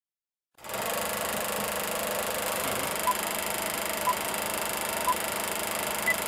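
Old film projector running sound effect, a steady whirring rattle that starts about half a second in, with three short beeps a second apart in the second half, like a film countdown leader.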